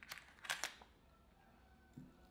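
A few light plastic clicks and taps as a hard-plastic Hardcore LG Heavy Minnow lure is set into a compartment of a clear plastic lure box, the loudest cluster about half a second in.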